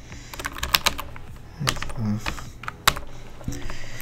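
Typing on a computer keyboard: irregular single keystrokes, a few sharper clicks among them, with a brief low murmur of voice about two seconds in.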